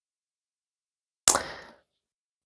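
A single sharp slap of a tarot card being put down on the table, a little over a second in, dying away within half a second.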